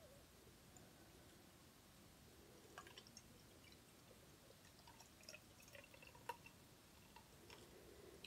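Very faint sound of beer being poured from a glass bottle into a tilted pint glass, with a few small clicks and drips; otherwise near silence.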